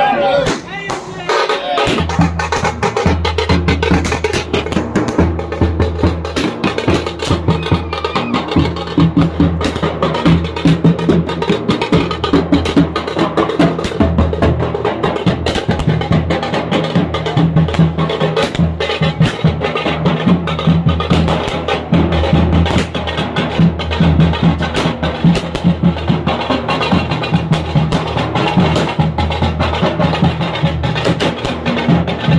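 Procession drums playing a fast, dense rhythm of rapid strokes over a steady low rumble, starting about two seconds in, with crowd voices underneath.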